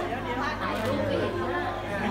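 Indistinct chatter of many voices talking over one another in a hall, with a steady low hum underneath.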